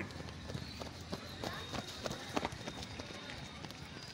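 Quick, irregular footfalls of several runners on a dirt track, a patter of soft short steps over a faint outdoor background.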